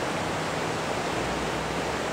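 Steady rushing outdoor background noise, even throughout, with no separate sounds standing out.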